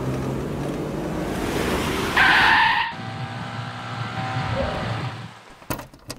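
Police jeep engine running as it drives in, then a loud tyre screech under a second long about two seconds in as it brakes hard to a stop. The engine then idles, and a short sharp knock comes near the end.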